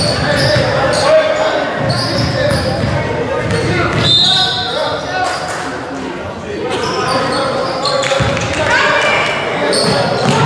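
A basketball bouncing on a hardwood gym floor, with indistinct voices echoing around a large gymnasium.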